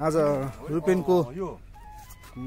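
A man's voice in short phrases, with a sliding pitch that rises and falls, speaking or singing.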